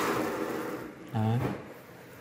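A brief rubbing, scraping noise that fades out within the first half second, followed by one short word from a man about a second in.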